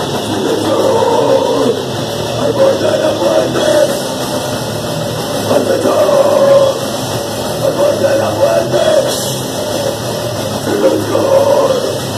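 Crust punk band playing live: electric guitar, bass and drum kit, with a vocalist singing over them in loud, continuous music.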